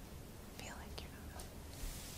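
A woman whispering faintly to herself, with a few small clicks and a short hissing breath near the end, over a low steady room hum.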